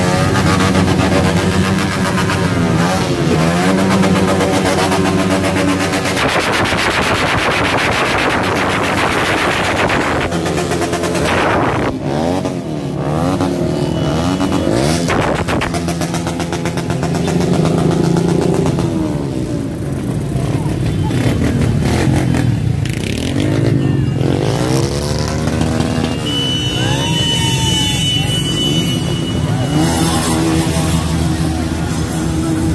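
Many scooter and small motorcycle engines running and revving as a convoy rides slowly past at close range, the engine notes rising and falling as each bike passes.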